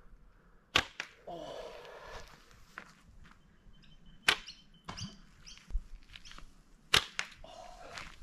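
Three sharp snaps of a slingshot's rubber bands releasing as shots are fired in turn: about a second in, near the middle, and about a second before the end.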